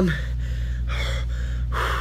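A man's quick, heavy breaths and gasps, about five short breaths in and out, the last one near the end the longest and loudest: an excited, overwhelmed reaction.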